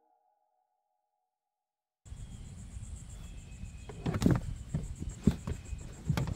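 Dead silence for about two seconds, then open-air background noise with a few dull thumps and scuffs as a rubber car floor mat is handled and set into a rear footwell.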